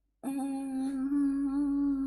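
A woman humming one steady, held "mmm" for nearly two seconds, starting a moment in.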